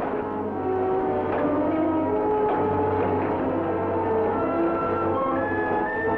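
Orchestral background music with brass holding sustained notes that step from pitch to pitch, and a higher note coming in near the end.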